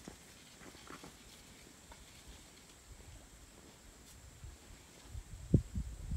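Quiet background with a faint low rumble, then a few low thumps near the end, the loudest about five and a half seconds in, from the handheld camera being handled.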